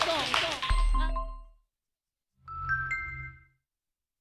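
Electronic logo sting: a brief low boom with a few ringing tones about a second in, then, after a short silence, a bell-like chime of several high tones over a low bass tone that fades out within about a second.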